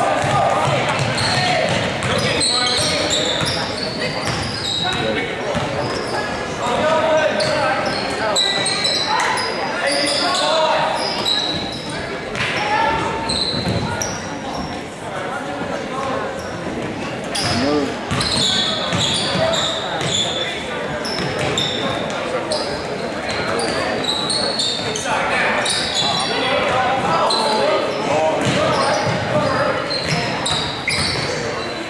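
Basketball game in a gymnasium: the ball dribbling on the hardwood floor, short high-pitched sneaker squeaks, and indistinct shouting from players and spectators, all echoing in the large hall.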